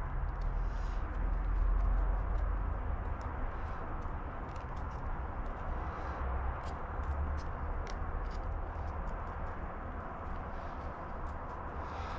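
Faint scattered clicks and taps as fingertips press seeds into potting soil in small plastic seedling pots, over a steady outdoor background with a low wind rumble on the microphone.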